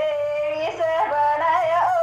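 A woman singing a Banjara folk song in a high voice, holding two long notes with a quick ornamented turn between them and a wavering trill on the second.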